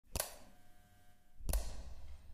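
Intro sound effects: two sharp clicks, one just after the start and one about a second and a half in, the second followed by a low rumble.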